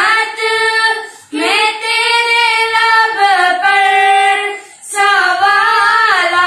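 Two children, a girl and a boy, singing an Urdu naat unaccompanied, in long held melodic lines. The singing breaks briefly for breath about a second in and again just before the five-second mark.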